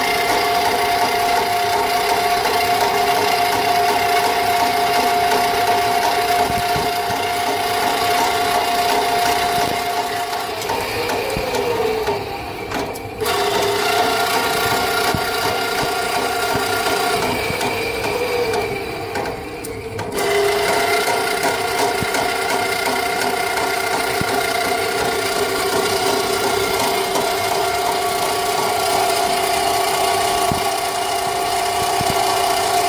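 Electric Eel drum sewer snake running, its electric motor spinning the cable down a floor drain with a steady tone. Twice the pitch sags and the sound drops away briefly, then it comes back up to speed.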